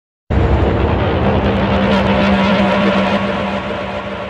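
Opening of an electronic music track: a loud, dense noisy sound effect with a steady low drone cuts in abruptly just after the start and begins to fade near the end.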